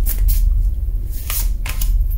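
A deck of tarot cards being shuffled by hand: a few short, sharp riffling strokes, two near the start and two more past the middle, with a card then drawn out and laid on the wooden table. A steady low hum runs underneath throughout.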